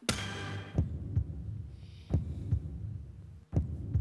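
A suspense cue for the moment of decision in a TV dating show: a synthesized heartbeat, low double thumps repeating about every second and a half over a steady low hum. It opens with a short bright hit.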